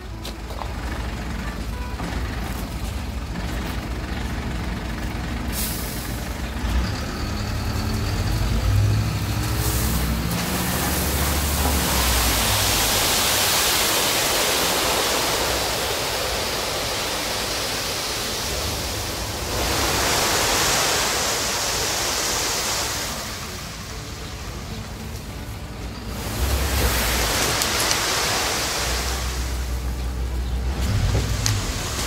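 Tipper truck's diesel engine running as the bed tips and a load of 0–16 mm gravel slides off onto a tarp. The loud rushing of the pouring gravel starts about ten seconds in and swells three times over the engine rumble.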